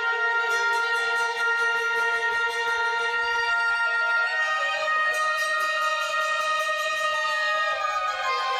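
Sheng, the Chinese free-reed mouth organ, playing sustained chords of several held notes together. The chord changes about halfway through and again near the end.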